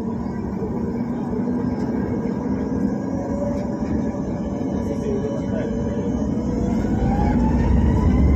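Jet airliner engines and airframe heard from inside the cabin as the plane accelerates down the runway for take-off. The steady noise grows louder, with an engine whine rising in pitch and a deeper rumble building over the last couple of seconds.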